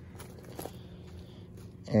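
Low steady background noise with a few faint, brief clicks; a man's voice starts at the very end.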